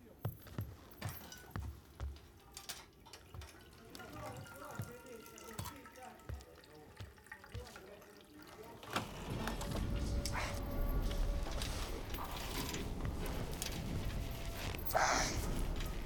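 Locker-room film soundtrack: scattered soft thumps and knocks, then from about nine seconds in a louder low rumble rises under faint music. Near the end comes a short splash of water running into a metal mug.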